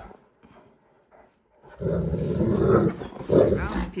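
Great Danes growling in rough play while wrestling face to face. The loud growls start just before two seconds in, after a near-quiet first part.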